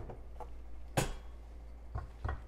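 Portafilter being taken off a Breville Barista Pro espresso machine's group head and set aside: a few light clicks, then one sharp click about a second in.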